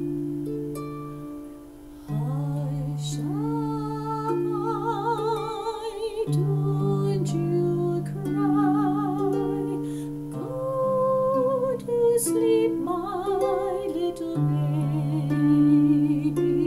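Lever harp playing a slow lullaby in D minor, plucked notes with low bass notes ringing under them. From about two seconds in, a woman's voice sings a wordless melody with vibrato along with the harp.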